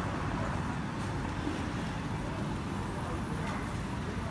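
City street ambience: a steady low rumble of road traffic, with no distinct single event standing out.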